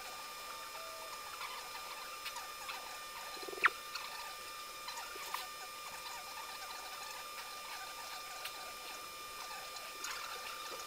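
Quiet room tone of an interrogation-room recording: a steady hiss with a faint high whine, scattered small clicks and rustles, and one sharper click about three and a half seconds in.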